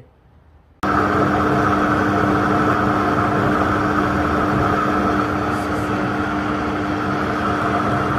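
Countertop blender switching on about a second in and running at a steady speed, its motor and blades chopping a full jug of raw cauliflower chunks into a puree.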